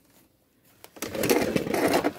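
Metal driveshaft parts and tools being handled on a concrete floor: a rapid, irregular rattling clatter starting about a second in.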